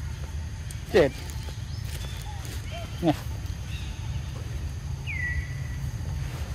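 Long-tailed macaques giving two short, sharp calls that sweep steeply down in pitch, about two seconds apart, over a steady low rumble. Near the end a thin whistle falls briefly and then holds steady.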